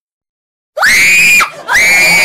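A woman screaming twice in fright at a toy snake, in two long, very high shrieks. Each shriek rises and then holds its pitch. The first begins about three-quarters of a second in, and the second follows after a short break.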